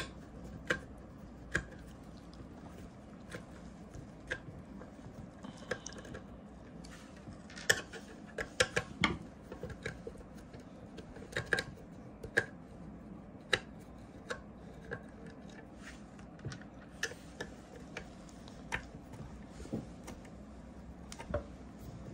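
Screwdriver turning screws out of the finned metal cylinder-head cover of a small portable air compressor: scattered, irregular light clicks and ticks of metal on metal.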